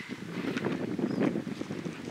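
Wind buffeting the microphone: a steady low rumbling rush.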